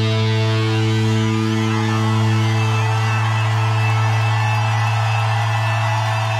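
Live rock band's distorted electric guitars holding one sustained low note, its overtones ringing steadily, with a noisy wash of distortion above it.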